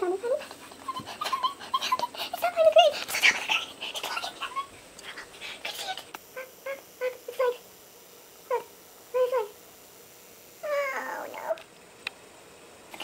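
A woman's fearful whimpers and whines, sped up so they come out high and squeaky: a string of short squeaks in the second half, then a longer whine near the end.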